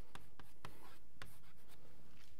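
Chalk writing on a blackboard: a series of short taps and scratches as the chalk strikes and drags across the board.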